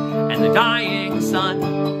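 Electric guitar played slowly, sustained chords ringing with notes changing every half second or so. A high, wavering, vibrato-like line rises above the chords from about half a second in to about a second and a half.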